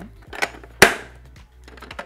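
Latches of a hard plastic carrying case snapping shut: two sharp clicks less than half a second apart, the second the louder.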